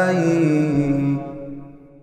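A man's voice holding the final sung note of an Arabic devotional nasheed, dropping in pitch partway through and then fading out.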